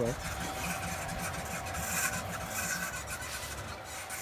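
Modified Anet A8 Plus 3D printer running mid-print: stepper motors whirring in shifting tones over a steady hum.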